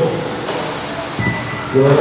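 1/10-scale radio-controlled touring cars on rubber tyres racing around a carpet track, their motors and tyres making a steady noise with a thin high motor whine about a second in.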